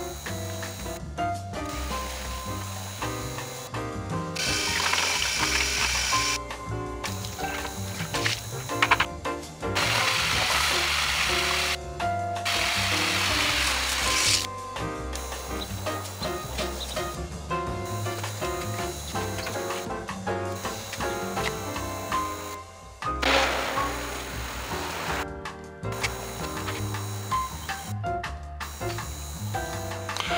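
Background music with a bass line, laid over the shot; no other sound stands out.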